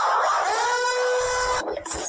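Logo sound effect: a loud wash of noise with a pitched tone that slides slightly up into place about half a second in and holds for about a second, then a short noisy burst before it cuts off abruptly.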